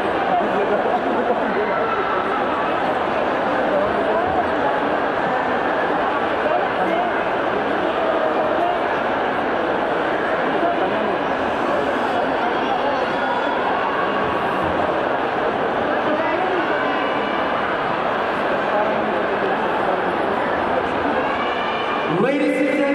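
Crowd chatter in a gymnasium: many people talking at once in a steady hubbub of overlapping voices, with no single voice standing out.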